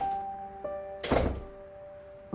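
Soft background score of sustained, held notes, with a single dull thump about a second in.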